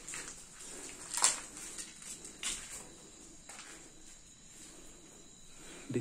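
A few slow footsteps or scuffs on a rubble-strewn concrete floor, sharp short knocks about a second apart, over a faint steady high hiss.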